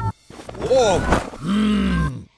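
Cartoon character vocal sounds played backwards. After a brief gap come a couple of short rising-and-falling voice noises, then a longer, low, drawn-out vocal sound near the end.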